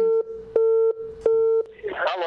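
Telephone busy signal: three short beeps of a steady tone, each about a third of a second long with equal gaps between them.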